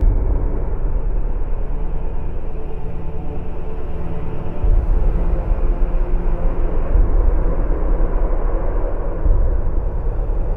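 A loud, deep rumbling drone that starts suddenly, with no clear tune, its low end swelling about halfway through and again near the end.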